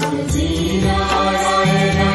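Devotional aarti music: chanted singing over instruments with a steady low drone.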